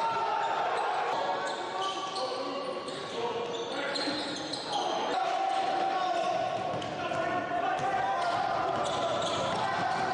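Live gym sound of a basketball game: a ball bouncing on the hardwood court amid players' and spectators' voices, echoing in a large hall.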